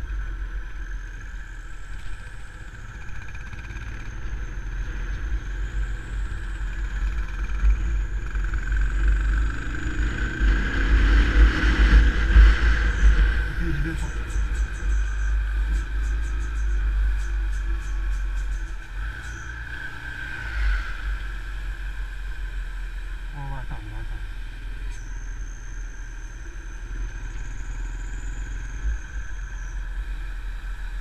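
Motorcycle running along the road, with heavy wind rumble on the microphone. It grows louder toward the middle and then settles back.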